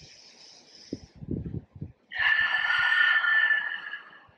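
A person's slow yoga breathing through the nose: a soft inhale, then about two seconds in a louder, drawn-out exhale lasting nearly two seconds with a faint whistle to it.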